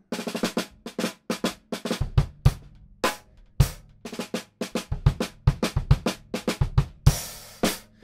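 Drum kit played with wooden sticks: a run of rapid snare and cymbal strokes, with kick-drum thumps from about two seconds in. A sustained cymbal wash sounds near the end.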